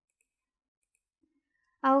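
Three faint computer-mouse clicks in near silence.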